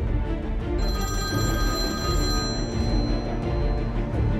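A mobile phone ringing for about two seconds, starting about a second in, over background music.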